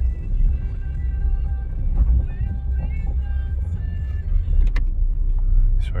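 Cabin sound of a Honda Jazz automatic being driven slowly: a steady low engine and road rumble, with a single click near the end.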